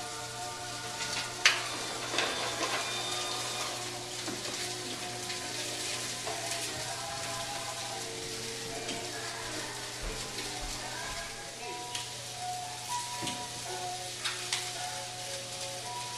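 Sausages sizzling in a frying pan, a steady fine hiss with a sharp click or two near the start, over quiet background music with held melodic notes.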